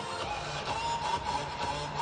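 Hockey arena ambience: a steady crowd hubbub with faint music over it.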